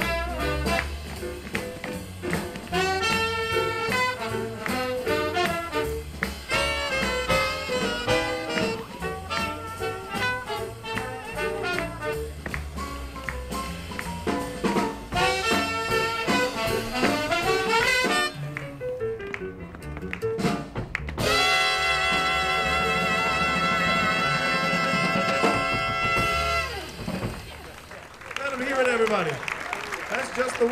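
Live swing jazz band with trumpet, trombone and saxophone playing a swing tune. It ends on one long held chord about three-quarters of the way through, and cheering and applause start near the end.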